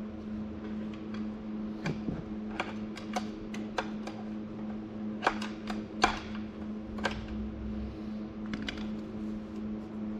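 Irregular metal clinks and taps of steel transmission parts being worked by hand on the auxiliary section of an Eaton 13-speed gearbox, as a part is worked at on its shaft that is not wanting to come off. The sharpest knocks come a little past halfway, over a steady hum.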